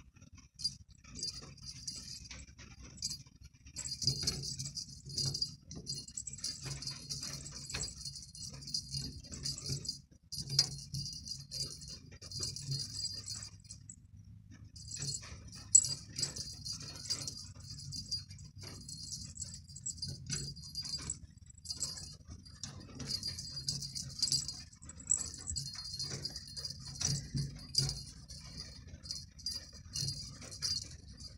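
A cat toy with a small bell jingling and rattling in on-and-off bursts as a cat bats and chases it, with scattered soft knocks and thumps from the play.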